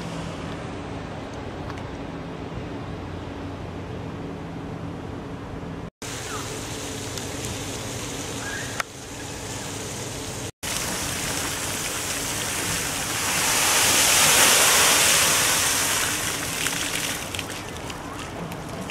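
A docked ferry's engines humming steadily and low for the first six seconds; then, after two brief dropouts at edits, the rushing splash of water pouring down cone-shaped fountains, swelling to its loudest a little past the middle and easing near the end.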